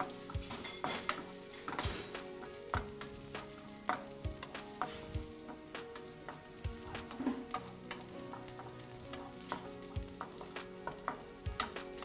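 Sliced onions sizzling in oil in a frying pan as they are fried until brown, stirred with a wooden spatula that knocks and scrapes against the pan at irregular moments.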